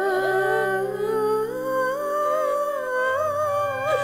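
Background music: a slow, wordless hummed melody that glides and wavers over held chords, with a new low note coming in about three seconds in.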